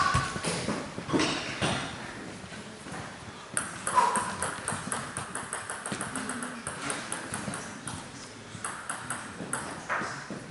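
Table tennis balls bouncing: short, sharp high ticks that come irregularly several times a second, with a few louder knocks and a thump among them.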